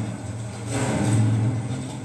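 Documentary soundtrack played through laptop speakers: a steady low rumbling drone with swells of rushing noise that get louder about two-thirds of a second in.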